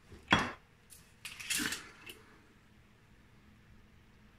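Kitchenware being handled beside a metal roasting tin as a glass bottle of olive oil is fetched. There is a sharp knock about a third of a second in, then a short cluster of clinks and knocks around a second and a half in.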